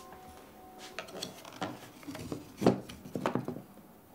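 Small objects on a dresser top being picked up and moved, a framed photo among them: a scatter of light knocks and clinks from about a second in, the loudest a little past halfway. Soft piano notes fade out at the start.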